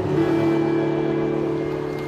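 Live acoustic music holding one long, steady chord.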